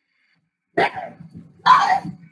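A dog barking twice, two short, loud barks about a second apart.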